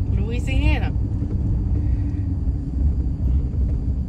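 Steady low road and engine rumble inside a moving car's cabin. A person's voice is heard briefly in the first second.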